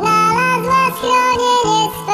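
A song sung in a sped-up, high-pitched chipmunk-style voice over music with a steady low note; the singing breaks briefly about halfway through.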